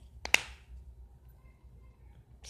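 A single sharp click about a third of a second in, with a fainter tick just before it, from handling slime and its plastic container.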